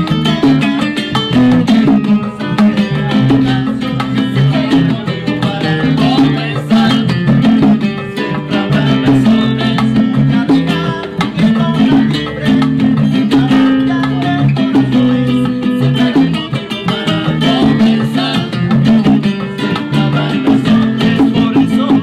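Live Cuban dance music from a small band: acoustic guitar strumming, electric bass playing a repeating bass line, and bongos.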